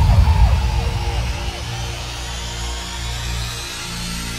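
Hardstyle track in a breakdown. The kick drums have dropped out, leaving a low sustained synth pad and bass. A repeating short synth blip fades away during the first second or so.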